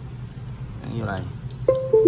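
A high electronic beep, then a short chime of clear notes stepping down in pitch, as the iRepair P10 box is plugged into the computer by USB cable: the sound of the device being connected.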